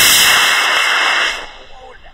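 High-power model rocket motor burning at liftoff: a loud rushing noise that ends about a second and a half in and fades as the rocket climbs away.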